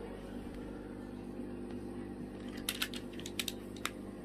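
Several short, sharp clicks and taps bunched together in the last second and a half, over a steady low hum in the room.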